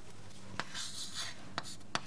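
Someone writing by hand: soft scratchy strokes with three sharp taps of the writing tip, the last two close together near the end.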